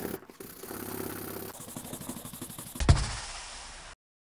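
Horsehair brush buffing a small piece of leather in quick strokes, with a single sharp thump about three seconds in. The sound cuts off suddenly near the end.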